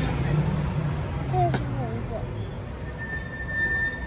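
Street traffic noise with the steady low hum of a nearby vehicle engine, a single click about one and a half seconds in, and a brief thin tone near the end.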